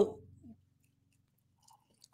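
A spoken word trailing off, a faint mouth sound about half a second in, then near silence.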